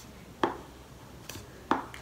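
A plastic pen tip knocking on an erasable writing tablet while writing: two sharp taps about a second apart, with a fainter click between them.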